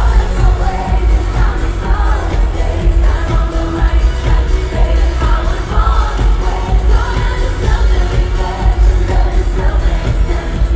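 Live pop music: a female lead vocal singing over a loud dance beat with heavy bass. The beat comes in at full strength right at the start.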